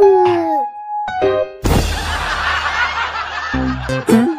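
Cartoon soundtrack music with comic sound effects: a descending glide at the start, a few short clipped notes, then about two seconds of dense, jumbled noise, and low notes near the end.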